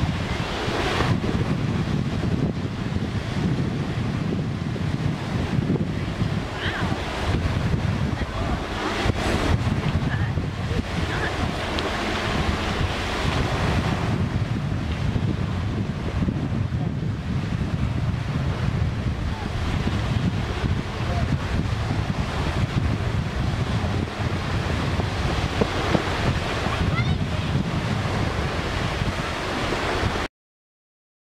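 Small waves washing onto a pebble beach, with steady wind buffeting the microphone.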